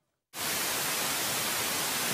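Television static: a steady white-noise hiss that cuts in suddenly about a third of a second in, after a moment of silence.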